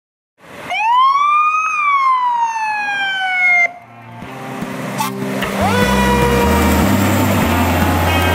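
Fire engine's siren sounding one loud wail that rises quickly, then slowly falls, and cuts off suddenly partway through. It gives way to rock music with bass and guitar.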